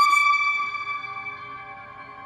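A held high note on a B-flat clarinet, blended with the electronic tape part, fading away over the first second and a half and leaving a quieter steady drone.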